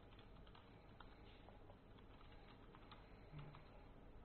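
Faint typing on a computer keyboard: scattered key clicks as terminal commands are entered.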